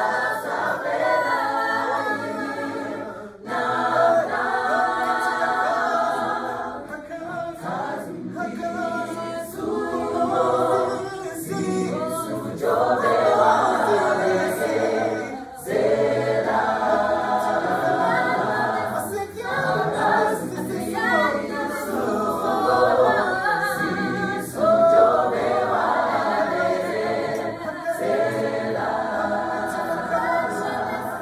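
Mixed men's and women's gospel choir singing a cappella, with brief breaks between phrases about three and a half and fifteen and a half seconds in.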